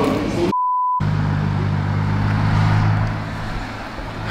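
A brief pure electronic beep of about half a second, with all other sound cut out around it. After that, a steady low hum of a car engine idling.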